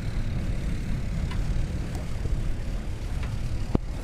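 Wind buffeting an outdoor microphone, giving a low, uneven rumble, with one sharp click near the end.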